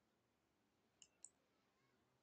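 Two faint computer mouse clicks about a second in, a quarter second apart, over near silence.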